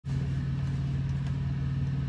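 Steady low hum of a semi truck's diesel engine idling, heard from inside the cab.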